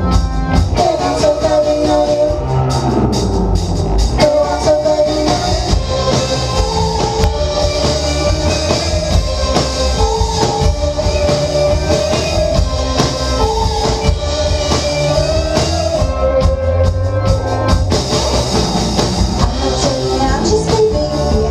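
Live rock band playing a song: electric guitars, bass guitar, synthesizer keyboard and drum kit.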